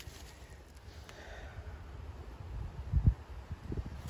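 Low rumble of handling noise on a handheld microphone, with a dull thump about three seconds in.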